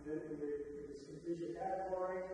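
A man speaking: a lecturer's voice talking, with the words not made out.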